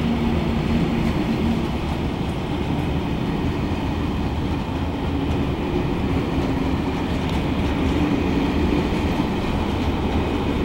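Long freight train of container wagons loaded with waste containers rolling steadily past, a continuous rumble of wheels on rail.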